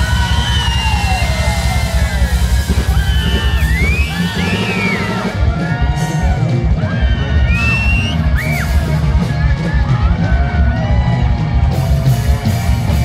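Loud live band music from a stage PA, with a dense drum-and-bass beat and a voice swooping up and down over it.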